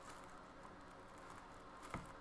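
Faint rustling of tissue paper with light ticks as a hockey puck is pushed into a tissue-lined cardboard box, with a small knock near the end.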